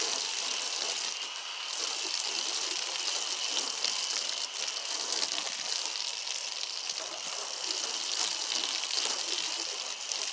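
Hose-end foam gun on a garden hose spraying soapy water against a car's body panels: a steady spray of water hitting metal and glass.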